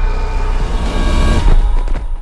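Loud trailer music with a heavy booming bass rumble under it, cutting off abruptly just before the end.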